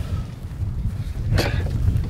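Low, steady rumble of wind on the microphone, with one brief sharp sound about a second and a half in.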